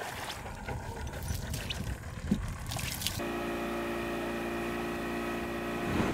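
Water splashing and running off a scuba diver climbing a boat ladder. About halfway through, this gives way abruptly to a boat engine running at a steady pitch as the boat travels at speed.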